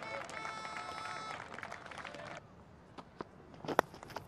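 Cricket-ground background sound with several held, steady tones that stop abruptly about two and a half seconds in, then quieter ambience and a single sharp crack of bat hitting ball near the end.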